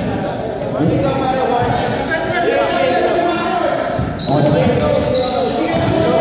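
A basketball bouncing on a hardwood gym floor, with men's voices talking and calling throughout, echoing in a large gym.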